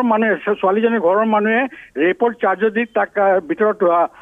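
Speech only: a reporter talking over a telephone line, the voice thin and cut off at the top.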